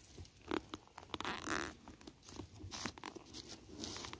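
Irregular crunching and rustling of dry leaves and twigs on sandy ground, close by, coming in several short clusters with sharp crackles.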